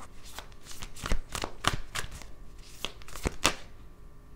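A deck of tarot cards being shuffled by hand: a string of irregular sharp card snaps and flicks, about a dozen in four seconds.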